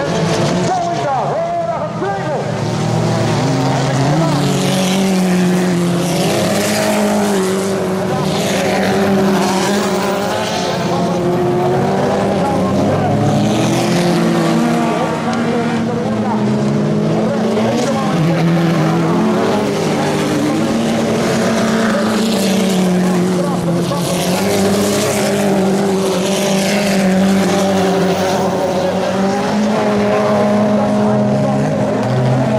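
A pack of stock-bodied autocross cars racing on a dirt track, several engines overlapping and revving up and down in pitch as the drivers accelerate and lift through the corners.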